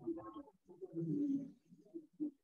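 Faint, low-pitched cooing calls, several short phrases in a row, like a dove's.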